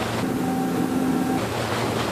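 Motorboat running at speed: a steady engine hum under the rush of water spraying off the hull.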